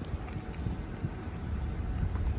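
A vehicle driving slowly, heard from inside the cab as a steady low engine and road rumble.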